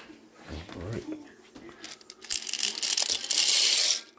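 Dry elbow macaroni poured from its box into the Instant Pot, a loud rustling, crinkling rush in the last second and a half that cuts off abruptly.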